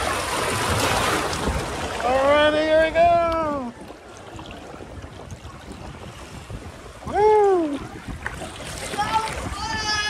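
Water rushing and splashing down a water slide as a rider sets off, then the quieter swish of sliding down the flume. A person lets out a long wordless whoop about two seconds in and a shorter one about seven seconds in.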